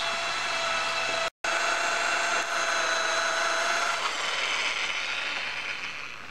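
Electric drill running with a steady whine, drilling the heads off the rusted, seized screws that hold a BMW K75/K100 rear drive. The sound cuts out for a moment about a second in and fades over the last couple of seconds.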